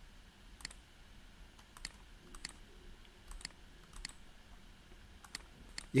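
A computer mouse clicking about ten times, sharp short clicks spaced irregularly, several in quick pairs, over a faint low hum.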